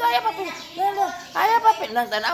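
A high-pitched voice calling out in short sing-song phrases, with a brief pause in the middle.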